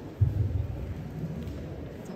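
A low, muffled rumble with a sudden thump about a quarter of a second in.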